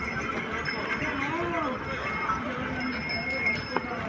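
Livestock-market bustle: background voices and animal noise, with one short call that rises and falls in pitch about a second in, and a sharp knock near the end.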